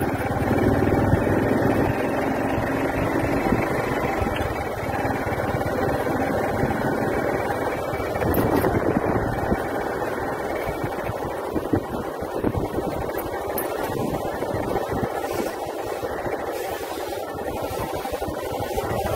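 Steady engine and road noise of a moving vehicle, heard from on board.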